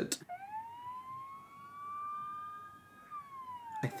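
A faint emergency-vehicle siren wailing, taken for a police car: one slow wail that rises over about three seconds and then falls near the end.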